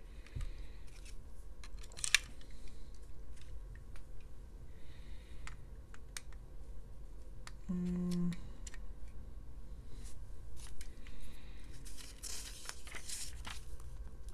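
LEGO plastic parts being handled and pressed together as wheels go onto a small brick-built car: scattered light clicks, with one sharper snap about two seconds in. Near the end comes a soft paper rustle as an instruction booklet page is turned.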